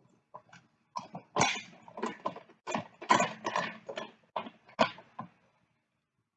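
Metal clanks and clicks from the lid clamps and wing nuts of a Harbor Freight paint pressure pot being swung into place and tightened by hand. They come as an irregular run of knocks lasting about five seconds.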